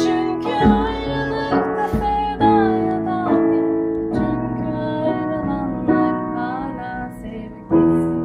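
A woman singing a Turkish song while accompanying herself on piano: held chords that change about once a second under a wavering sung melody, with a short lull near the end before a new chord is struck.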